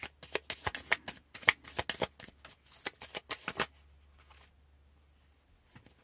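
Hands shuffling a deck of oracle cards: a rapid run of crisp card clicks and snaps that stops about three and a half seconds in.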